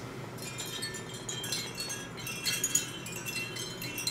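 Wind chimes tinkling: a loose, irregular shower of small high clinks and short ringing tones as the hanging pieces knock together.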